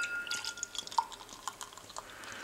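Pilsner beer poured from a glass bottle into a tall glass, gurgling and splashing unevenly as the foamy head rises. A faint glassy ring fades out about a second and a half in.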